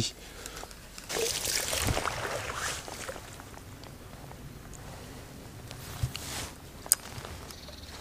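Lure cast and retrieve with a spinning rod and reel on a river: a rush of line and water noise lasting about two seconds, starting about a second in, then a low steady background during the retrieve, with a sharp click near the end.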